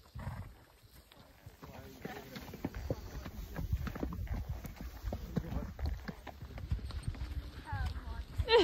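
A pony's hooves clopping along a hill track under its rider, the footfalls irregular and getting louder and busier from about two seconds in.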